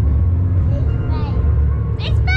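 Steady low rumble with faint voices talking quietly over it.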